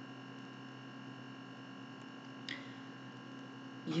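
Steady electrical hum on the recording, made of several constant tones, with one brief faint noise about two and a half seconds in.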